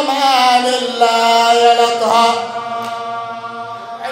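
A man's solo voice chanting a mournful Arabic elegy into a microphone. The notes waver at first and then are held long; the last begins about halfway through and fades away near the end.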